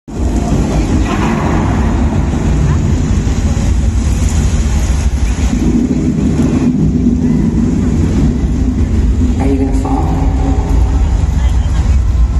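Live stadium concert sound from a big PA system: a loud, dense wash with heavy bass, and held pitched tones (a voice or synth) coming in from about halfway through.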